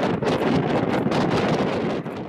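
Wind buffeting the microphone outdoors: a loud, rough, fluttering rush with no steady tone in it.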